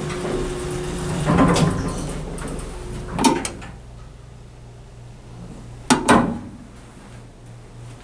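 Knocks and then two sharp metal clacks about six seconds in, the loudest sounds here, from the hinged steel door of an elevator cab's emergency-phone cabinet being handled, over a steady low hum.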